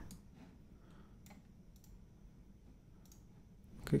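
A few faint, scattered clicks of a computer mouse as a line of code is selected and copied from a right-click menu.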